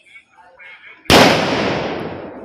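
A firecracker going off with one loud, sharp bang about a second in, its sound dying away slowly after it.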